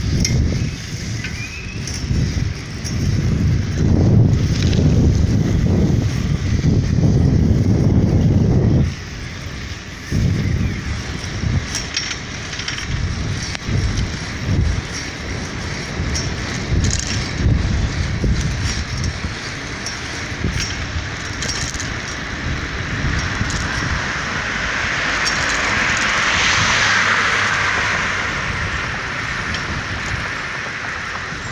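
Wind buffeting the microphone of a moving street camera, heavy and gusty for the first nine seconds, then lighter. Near the end a car passes with a swelling, then fading hiss of tyre noise.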